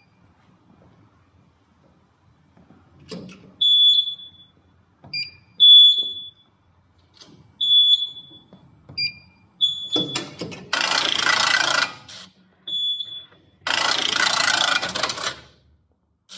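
Computerized flat knitting machine being restarted: its buzzer gives a series of short high beeps at two pitches. Two loud hissing rushes follow near the end, each lasting over a second, with a beep between them.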